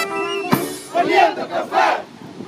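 A military brass band's held final chord ends with a sharp hit about half a second in, followed by two shouts from many voices in unison, a display shout by the band.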